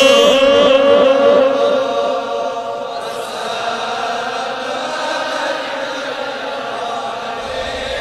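A man's devotional chant through a microphone and sound system, holding a long sung note that fades out about two seconds in; quieter sustained chanting carries on after it.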